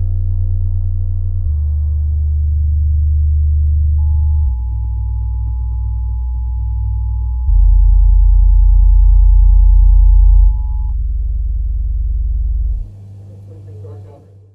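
Deep, sustained bass drones from a film soundtrack's opening studio-logo sequence, played as a subwoofer demo. The drones step to a new pitch every few seconds and are loudest a little past halfway, with a faint high pair of tones held through the middle. They fall away near the end.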